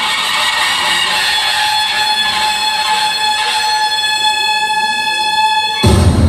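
One long, steady horn-like note with many overtones, held for nearly six seconds in the recorded music. It cuts off abruptly just before the end as a bass-heavy dance beat starts.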